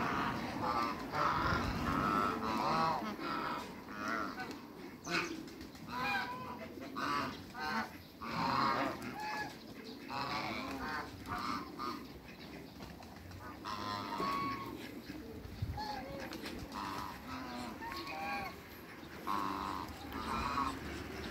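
Geese calling: many short, repeated honks from several birds, coming in quick runs with a lull about two-thirds of the way through. Barnacle geese are the birds in view.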